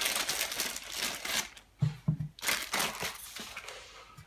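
Clear plastic bag crinkling in bursts as a small metal box is slid out of it, with a brief low thump about two seconds in.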